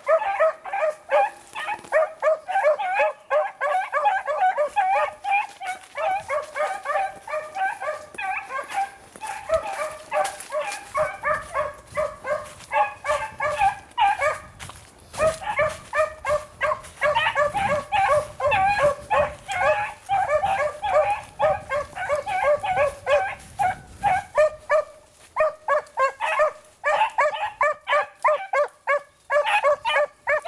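Beagles baying on a rabbit's scent trail: a rapid, continuous run of short, overlapping yelping barks, with a brief lull about halfway through. The hounds are giving tongue on the track.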